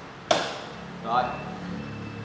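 A single sharp knock about a third of a second in as a Yamaha Exciter motorcycle is set down onto its stand, with a faint steady hum under it.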